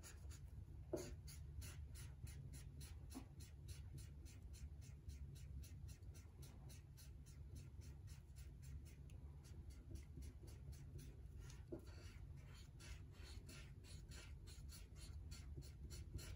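Black marker pen scratching on paper in quick, even back-and-forth strokes, about three a second, as an area is filled in with ink. Faint.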